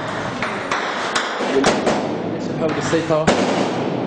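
Gunfire: a string of about seven irregular single shots, the loudest about three seconds in.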